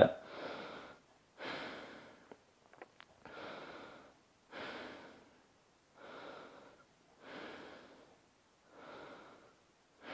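A man's slow, deep breathing while holding a lying floor stretch, a breath about every second and a half, each one fading away. This is deliberate belly breathing meant to relax the body so the arm sinks toward the floor.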